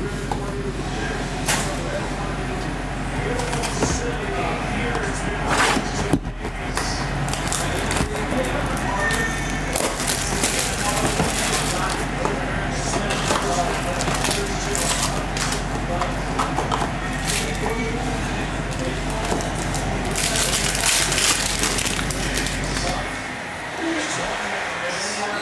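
Hands opening a trading-card hobby box and pulling out a pack: cardboard handling with a few sharp clicks, and a crackle of wrapper or cards near the end. A voice and music carry on underneath, over a steady low hum.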